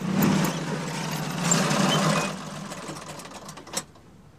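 Engine of a John Deere XUV Gator utility vehicle running, louder for a moment about halfway through, then cutting off near the end with a sharp click.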